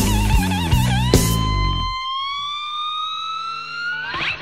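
Electric blues slide guitar playing a lead line with a wide, even vibrato over bass and drums. About a second in it slides up into a long held note that keeps gliding slowly upward in pitch, and the band drops out at about two seconds, leaving the note ringing alone.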